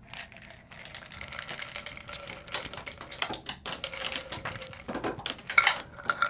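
Capsules rattling and clicking in a plastic supplement bottle as it is tipped up and shaken, a quick, irregular clatter that grows louder, with the loudest strokes near the end.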